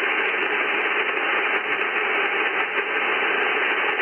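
Icom IC-7300 receiver audio on 40-metre LSB with its noise reduction switched off: a loud, steady hiss of band noise, cut off sharply at about 3 kHz by the receive filter.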